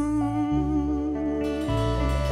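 Live band playing the closing bars of a song: sustained chords from electric guitar and keyboard over electric bass notes that change about half a second in and again near the end, with no drums.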